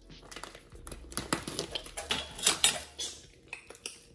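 Clattering and clicking of dishware being handled: a stainless steel divided dish and plastic food containers knocked and moved about, in a quick run of small clacks with two louder ones about two and a half seconds in.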